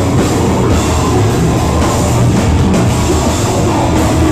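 Live metalcore band playing loud and dense: distorted electric guitars over a pounding drum kit, without a break.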